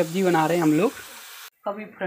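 Spice masala and green chillies sizzling in hot oil in a kadhai as they roast, a steady hiss under a man's voice. The sizzle cuts off suddenly about one and a half seconds in.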